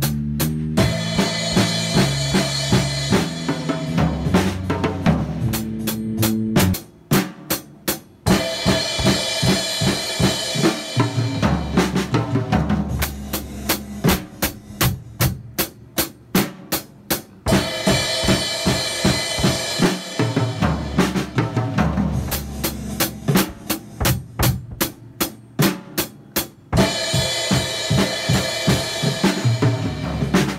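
Acoustic drum kit played along to a recorded song: kick drum and snare keep a steady beat over the song's backing music. Fuller passages with a wash of cymbals alternate with sparser passages of separate drum hits.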